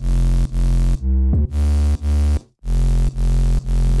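Dirty electro house synth bass from a Serum preset playing a pattern of held notes, chopped into pulses about every half second. There is a pitch glide between notes about a second in, and a brief break around two and a half seconds in before the pattern starts again.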